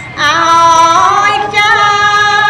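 A woman chanting Khmer smot, the melismatic Buddhist sung recitation, into a microphone. After a short pause at the start she holds one long wavering note, breaks off briefly partway through and carries the line on.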